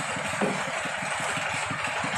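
Small single-cylinder engine of a Honda motor scooter running steadily with an even low pulse as the scooter moves off.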